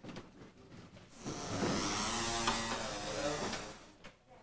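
Wooden chairs dragged and scraping on a wooden stage floor as two people sit down at desks. The sound is a continuous squealing scrape of about two and a half seconds, starting a little over a second in.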